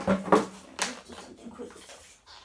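Handling noise from a cardboard box being moved and set straight close to the microphone: a few sharp knocks and clicks in the first second, then quieter rustling.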